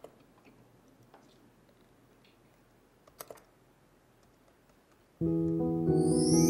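A few faint laptop keyboard clicks, with a pair about three seconds in. Just after five seconds background music starts abruptly with sustained instrumental chords, much louder than the clicks.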